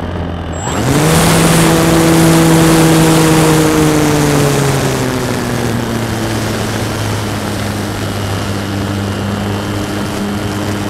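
Electric motor and propeller of a Dynam radio-controlled powered glider, heard from a camera mounted on the plane: about a second in the motor winds up sharply to a steady high whine as the throttle is opened, then from about four seconds on its pitch slowly sinks, with loud rushing air throughout.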